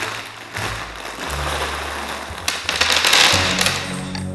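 A plastic bag of dry pasta being ripped open and the pasta spilling out onto a table: a dense, noisy rustle that is loudest about two and a half to three and a half seconds in. Background music with a low bass line plays underneath.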